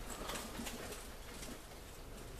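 Rustling of a jacket's fabric as it is swung on and the arms pushed into the sleeves, soft and brief, dying down after about a second and a half.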